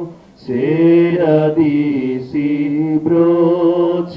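Telugu devotional hymn sung in long, held notes by a single lead voice, with a steady low tone sustained beneath it. The voice drops out briefly for a breath just after the start.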